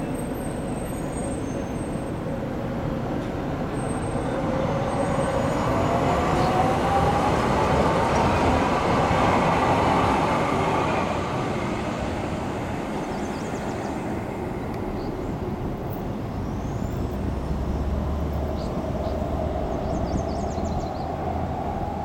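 San Diego Trolley light-rail train (Siemens SD-100 cars) pulling out and accelerating, its motor whine rising steadily in pitch as it picks up speed, loudest about halfway through and then fading as it goes. A low rumble builds again near the end.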